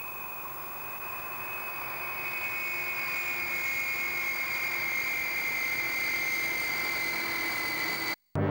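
Jet engines of a four-engine Airbus A340 airliner on landing approach: a steady whine sliding slowly down in pitch over a rushing noise that grows steadily louder.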